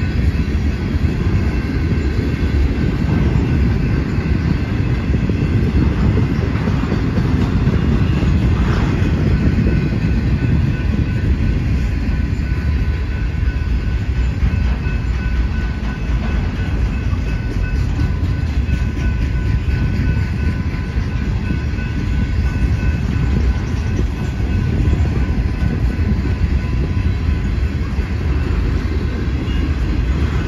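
Freight train cars rolling past close by: a loud, steady rumble of steel wheels on rail, with a faint steady ringing from the wheels and rails above it.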